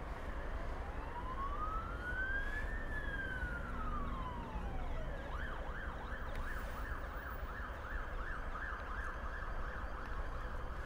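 Ambulance siren: a slow wail that falls, rises and falls again, switching about five seconds in to a fast yelp of about three sweeps a second, which stops near the end.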